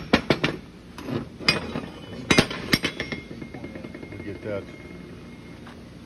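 Steel brackets being handled, a series of sharp metallic knocks and clinks in the first three seconds, then quieter.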